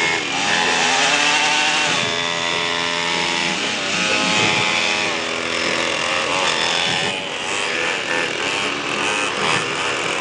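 Buzzing small engines of a mini pit bike and mini quads running and revving, their pitch dipping and climbing several times.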